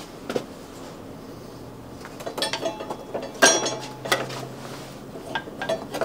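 Metal hand tools clinking and knocking against one another and the workbench as they are handled, a quick cluster of clinks a couple of seconds in, the loudest with a brief metallic ring.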